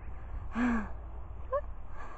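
A person's short breathy gasp about half a second in, falling in pitch, followed a second later by a brief high chirp, over a steady low rumble of wind on the microphone.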